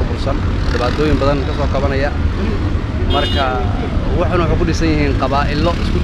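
A man speaking, interviewed outdoors, over a steady low rumble of street noise. About three seconds in, a brief high-pitched tone sounds over the voice.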